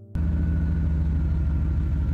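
A car engine running steadily with a deep, even sound, cutting in suddenly just after the start.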